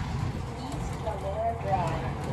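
Faint, indistinct voice over a steady low rumble of background noise.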